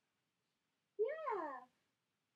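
A toddler's single drawn-out vocal sound about a second in, high-pitched, rising and then falling in pitch.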